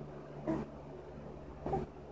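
Baby making two short vocal sounds, about a second apart, a little squeal or grunt, with no words.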